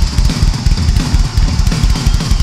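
Rock drum solo played live on a drum kit: rapid, dense bass drum strokes under a wash of cymbals.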